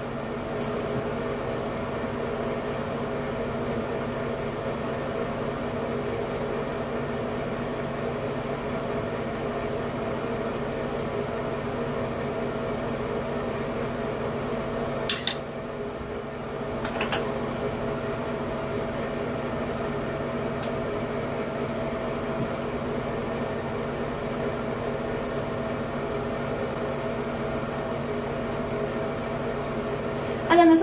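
Light-and-fan combo unit running with a steady hum and several steady tones. Two short clicks about two seconds apart halfway through, as small items are handled.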